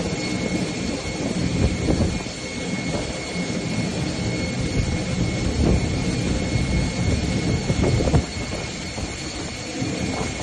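Jet engines of a flydubai Boeing 737 running as it moves through deep floodwater in heavy rain: a steady high whine over a continuous loud roar of noise.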